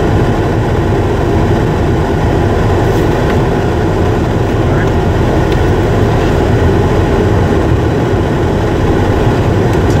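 Steady, loud noise inside the cab of a Ford F-250 Super Duty, from the truck running with its 6.7 diesel.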